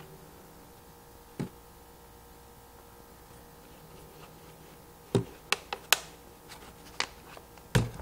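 Small sharp clicks and taps of hands handling a plastic water-bottle cannon while reloading it with its cut Q-tip dart. There is one click about a second and a half in, a quick cluster around five to six seconds, and a couple more near the end, over quiet room tone.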